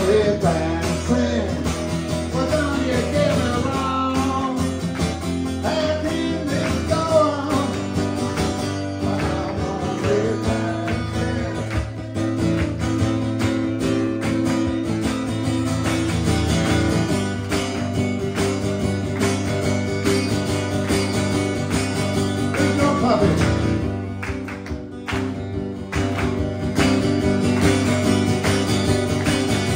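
Solo acoustic guitar, strummed steadily, with a man singing the lead vocal, played live. The playing eases off briefly about four seconds before the end, then comes back in full.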